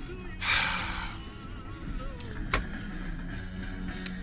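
Car engine running at low speed, heard from inside the cabin with the window open, with a short hiss about half a second in and a single sharp click about two and a half seconds in.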